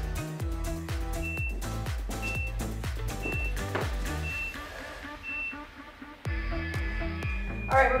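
Upbeat background music with a steady beat, over which five short high beeps sound about a second apart, a timer counting down the last seconds of an exercise interval. The music drops away briefly near the end, then picks up again.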